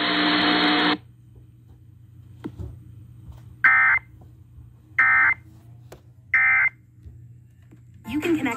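Emergency Alert System end-of-message data bursts played through an iHome clock radio's speaker: the broadcast audio cuts off about a second in, then three short, shrill bursts of data tones, each about a third of a second long and a little over a second apart, mark the end of the severe thunderstorm warning.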